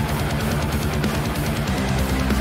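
Heavy metal band playing: distorted electric guitars over drums.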